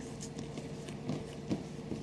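Faint, soft rubbing and light taps of fingers pressing and sealing the edges of a strip of sweet dough on a paper-covered worktop, over a faint steady room hum.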